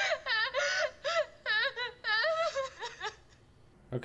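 A young woman sobbing and wailing in short, high, breaking cries that stop about three seconds in.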